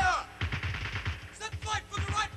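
Shouting voices, short calls whose pitch falls away at the end, over a run of repeated low thuds that sound like gunfire.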